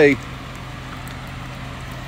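A steady low hum with an even hiss under it, unchanging throughout.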